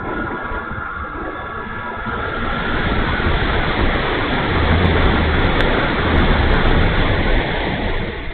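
Wind rushing over the onboard camera's microphone on an E-flite Timber electric RC floatplane as it descends to land on snow. A faint electric motor whine fades out within the first two seconds, then the rush grows louder, with a low buffeting rumble through the second half.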